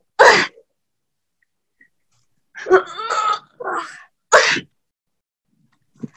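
Short, breathy grunts and huffs of effort from a person miming hard digging: one just after the start, then three more close together a few seconds in.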